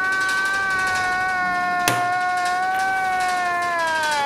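A man's long, high-pitched wailing laugh held on nearly one pitch, sliding down slightly near the end; it is an inserted reaction-meme sound effect. A single sharp click sounds about halfway through.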